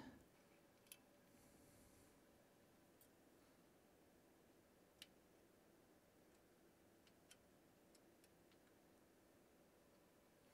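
Near silence: room tone, with a few faint, scattered clicks.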